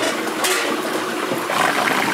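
Potato fries deep-frying in a wok of hot oil, a steady sizzling and bubbling with a few sharper crackles.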